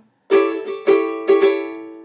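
Ukulele strummed three times on one seventh chord, an A7 at the top of a chromatic walk-down toward G7, the chord ringing out and fading after the last strum.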